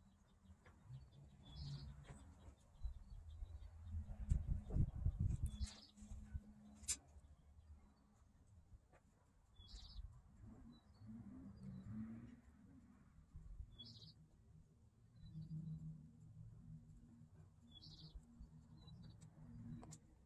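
A bird giving a short, high chirp about every four seconds, five times in all, over a faint low rumble.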